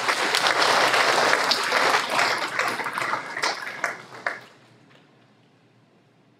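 Audience applauding with a spread of hand claps, which thins out to a few last claps and stops about four and a half seconds in.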